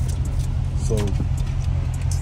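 Steady low rumble of a running car heard from inside the cabin, with a man's brief spoken word about a second in.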